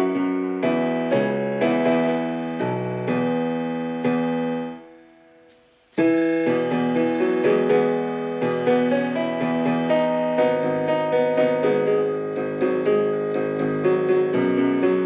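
Solo grand piano playing a passage of notes and chords that dies away about four and a half seconds in, then a new passage starts suddenly about a second and a half later.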